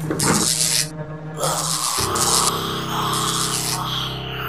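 Horror film score: a sustained low drone that changes to a new, deeper chord about halfway through, overlaid by three harsh hissing bursts.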